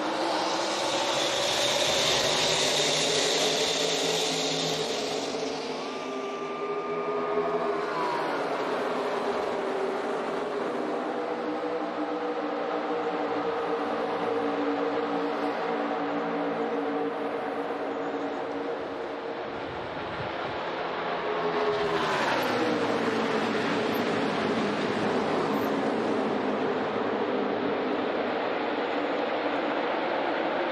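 A pack of NASCAR Cup Series V8 stock cars racing at full throttle, many engine notes layered together. The pitch sweeps down as the pack passes, once a few seconds in and again about two-thirds of the way through.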